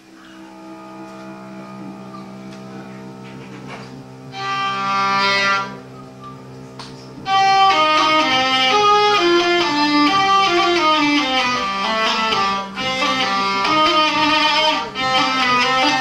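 Hurdy-gurdies playing: a steady drone swells in from quiet, a short bright chord sounds about four seconds in, and from about seven seconds a quick melody runs over the unbroken drone.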